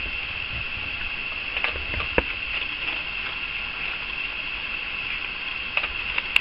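A raccoon eating dry kibble, with a few faint crunching clicks over a steady high-pitched hiss.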